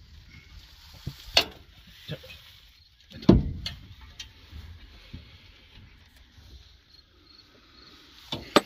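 A few scattered clicks and knocks from hand tools working on bolts under a van while its gearbox is being removed; the loudest is a knock about three seconds in, over a faint steady background.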